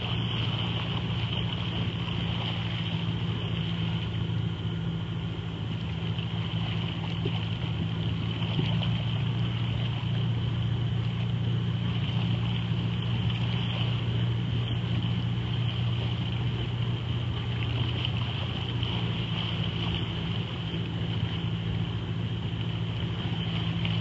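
Outboard motor of a small boat running steadily at low speed, a constant even hum that does not rise or fall.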